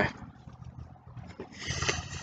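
Handheld microphone being moved and handled: a low steady rumble with faint clicks, then a brief rustling scrape near the end as the mic is raised toward the mouth.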